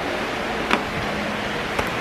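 Steady background hiss of room noise, with two or three faint clicks from handling of the camera while walking.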